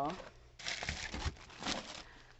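Plastic crinkling and rustling, starting about half a second in and lasting over a second, as a plastic bag packed with snack packets is handled.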